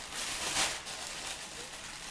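Faint rustle of a paper-wrapped package being handled and opened, with one brief louder rustle about half a second in.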